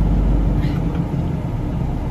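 Semi-truck's diesel engine idling, heard from inside the cab as a steady low rumble; the deepest part of the rumble eases off a little under a second in.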